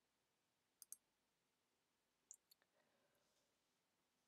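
Near silence, broken by a pair of faint clicks just under a second in and one more click a little past two seconds.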